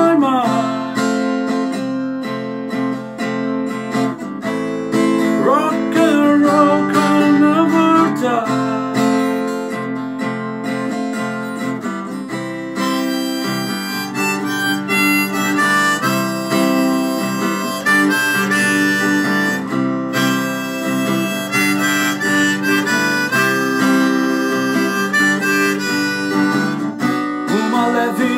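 Harmonica in a neck rack playing a melody over a strummed acoustic guitar, with some bent notes, an instrumental passage with no singing.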